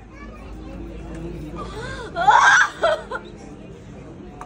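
A person's loud, brief vocal outburst about two seconds in, followed by a second shorter one, over low background voices.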